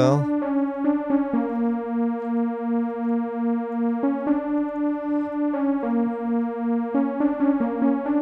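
FRMS software synthesizer's sawtooth oscillator layers, with the granulators switched off, playing sustained notes on the keyboard. The notes change about every one to two seconds, and their level wobbles steadily.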